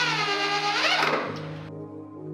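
Corded electric drill driving a screw through a steel door hinge. Its motor whine sags in pitch under load, then rises sharply and cuts out after about a second. Background music plays throughout.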